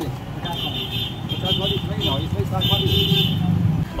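Indistinct voices in the background over a steady low rumble of street and traffic noise.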